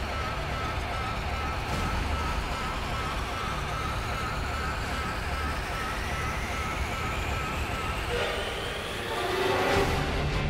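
A dramatic build-up sound effect: a dense rumbling noise with tones slowly rising in pitch, swelling in the last second or so.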